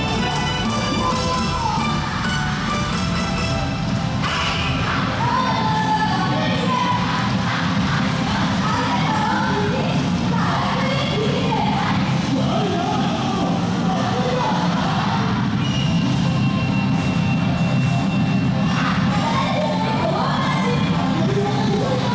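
Loud yosakoi dance music played over loudspeakers, with many voices shouting and calling over it.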